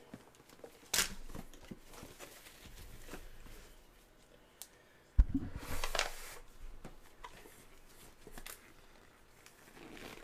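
Trading-card packaging handled, torn and crinkled by hand. There is a sharp snap about a second in, then a thump about five seconds in followed by a second of crinkling.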